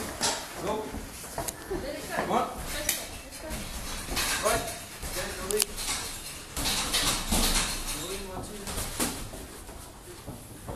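Muay Thai sparring: several sharp slaps and knocks of gloves and feet, over indistinct voices.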